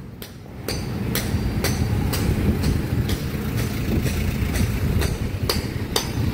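An engine running close by with a steady low rumble, and sharp knocks repeating about twice a second over it.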